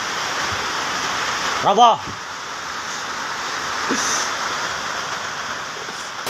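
Steady rushing of floodwater recorded on a phone, with a person's voice calling out briefly about two seconds in.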